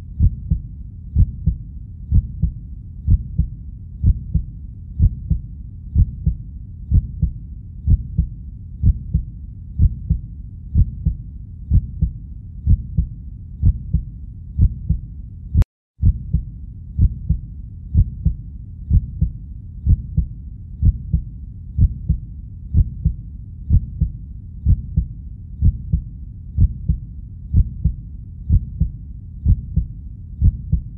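Slow heartbeat sound effect, about one beat a second, each beat a low double beat. About halfway through, the sound drops out for a split second with a click.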